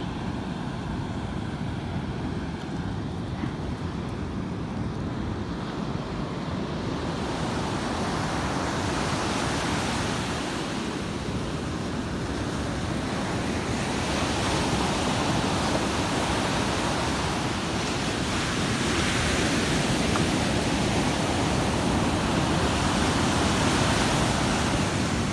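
Ocean surf breaking and washing up the shore, swelling and easing as the waves come in, with wind rumbling on the microphone. The surf grows louder and fuller about a third of the way in.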